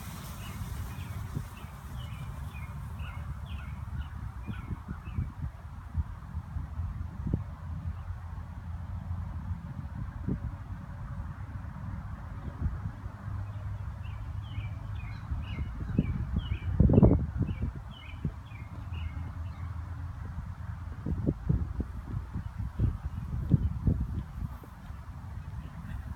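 Wind rumbling on the microphone, with a bird calling in runs of short, repeated notes near the start and again past the middle.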